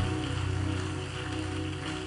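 Soft background music of steady held chords, with no speech.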